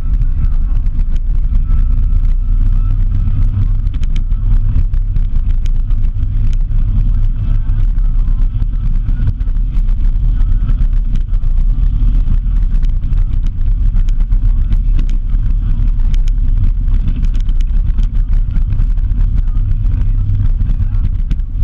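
Vehicle driving fast on a dirt road: a steady low rumble of engine, tyres and wind at the mounted camera, with scattered small ticks throughout.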